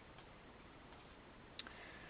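Near silence: faint room hiss, with one short, faint click about one and a half seconds in.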